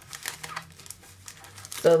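Plastic photo-album sleeves and a piece of card stock crinkling and rustling in the hands as the card is handled over the album: a scatter of light, irregular crackles.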